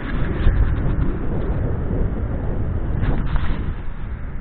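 Wind buffeting the microphone of a moving handheld camera: a loud, irregular low rumble, with a few clicks about three seconds in.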